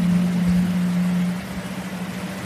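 A steady low hum at one unchanging pitch, louder at first and dropping somewhat about one and a half seconds in.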